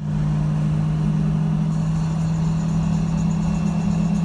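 Cars driving at a steady speed on a highway: an unchanging low engine drone with road noise underneath.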